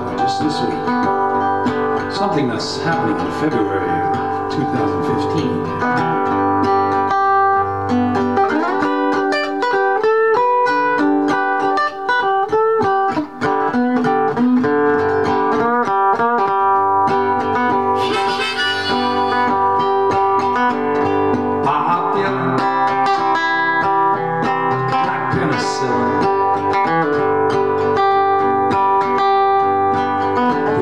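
Harmonica, played in a neck rack, carrying an instrumental melody of held and stepping notes over an acoustic guitar.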